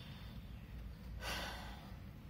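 A person's single breath, an audible sigh-like exhale or inhale lasting under a second, about a second in, over a low steady room hum.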